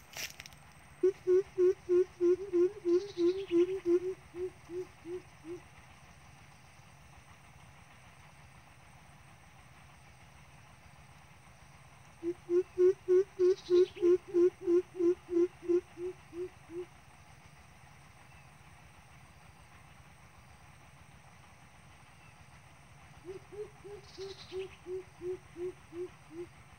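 Greater coucal's deep hooting call, used as a trapping lure. It comes in three runs of even hoots, about three a second, each run fading away at its end. The first two runs are loud and the last is quieter.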